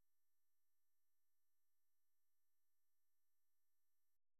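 Near silence: only a very faint, steady electronic hum.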